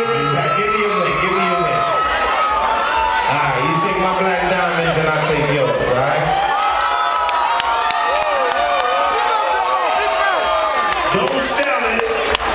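A loud crowd cheering and shouting, many voices calling out over one another, with a man's voice held low underneath in the first half.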